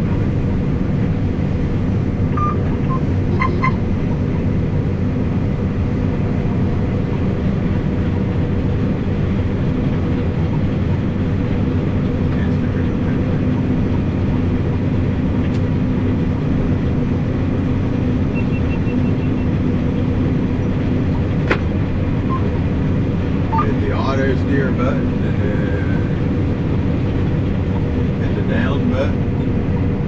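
Combine harvester running while harvesting soybeans, heard inside the cab: a steady machine drone with a low hum. A short series of faint high beeps comes about two-thirds of the way in.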